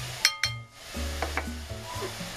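A metal measuring cup drops into a glass mixing bowl with one sharp clink and a short ring about a quarter-second in, followed by a few softer knocks and rings as it settles. Baking soda fizzes faintly in the acid underneath.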